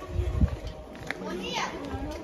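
Children's voices calling out and chattering, growing clearer in the second half. There are low thumps on the microphone near the start.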